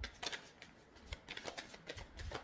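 A tarot deck being shuffled: soft, irregular rustles and light flicks of cards.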